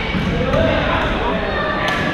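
Busy badminton hall with players' voices from across the courts and a sharp racket smack on a shuttlecock near the end.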